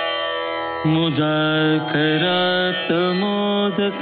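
Devotional chant in Indian classical style, sung by a single voice over a steady drone. The voice enters about a second in, with held notes and slides between them.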